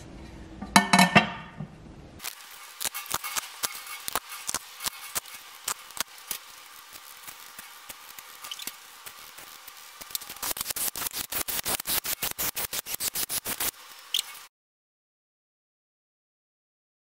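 A metal baffle plate clinks down onto an aluminium engine block. Irregular metallic clicks and taps follow as its bolts are fitted. Near the end a ratchet clicks quickly and evenly, about eight clicks a second, running the bolts in, and the sound then cuts off suddenly.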